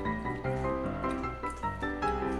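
Background music: a melody of short, evenly paced notes over a steady accompaniment.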